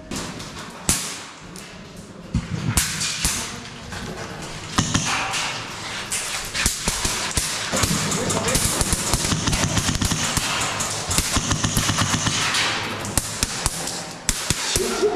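Airsoft guns firing in rapid bursts, a dense run of sharp clicks and cracks that grows busier in the second half.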